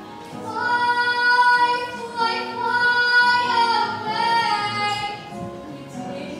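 A girl singing into a handheld microphone, holding a few long, high notes.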